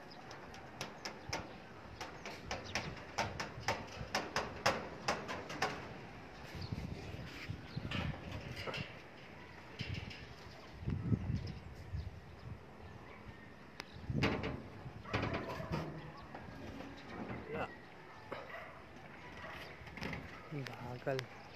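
Domestic pigeons cooing in low, repeated bursts. A rapid run of sharp clicks fills the first several seconds.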